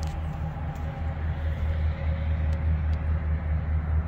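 Pickup truck engine idling: a steady low rumble.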